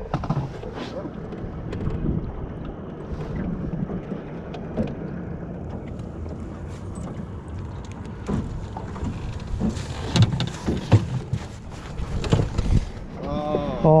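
Wind rumbling on the microphone of a small aluminum fishing boat, with water lapping at the hull. Scattered knocks and clicks of gear and fish being handled in the boat come in the second half.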